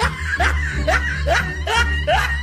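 Snickering laughter in short rising squeaks about twice a second, over background music with a steady bass line.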